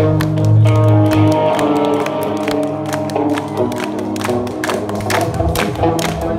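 Live rock band playing loudly through a PA: held bass and guitar notes over a fast, steady run of drum and cymbal hits.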